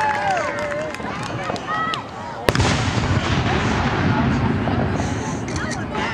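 An aerial firework goes off with one sharp bang about two and a half seconds in, followed by a long noisy rumble that fades over about three seconds.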